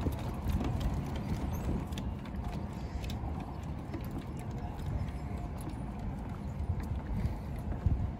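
Footsteps and a dog's paws knocking irregularly on wooden boardwalk planks, over a steady low rumble of wind on the microphone.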